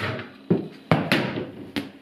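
Four or five sharp knocks or thumps, roughly half a second apart, each ringing out briefly.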